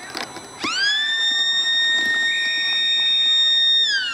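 Football ground siren sounding the end of the quarter: one long wail that starts a little under a second in, climbs quickly to a steady high pitch, holds for about three seconds, and begins to wind down at the very end.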